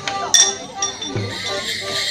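Border morris dance music: a melodeon tune over a steady drum beat, with a sharp metallic clink ringing out about a third of a second in. A bright jingling of bells comes in during the second half.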